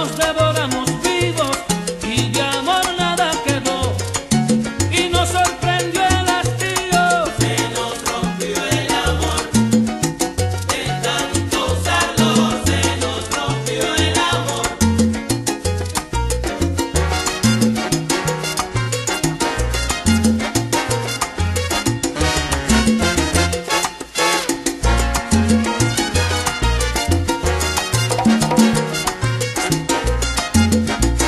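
Salsa band playing an instrumental passage without singing: a bass line and percussion keep a steady dance beat under melodic lines, which are busiest in the first half.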